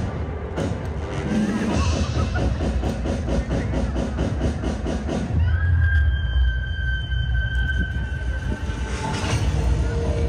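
Dance music with a fast, even beat; about five and a half seconds in it changes to heavy bass under long held high tones.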